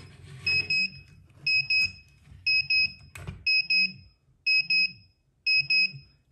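Pudibei NR-750 radiation monitor's alarm beeping: a high-pitched double beep about once a second. The measured dose rate, about 0.6–0.75 µSv/h from the americium-241 in a smoke detector under the probe, is above the monitor's 0.50 µSv/h alarm threshold.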